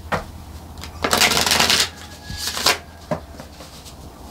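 Tarot deck being shuffled by hand: a sharp click at the start, a rapid riffle of cards lasting most of a second about a second in, a shorter rush of cards after it, and another single click a little past three seconds.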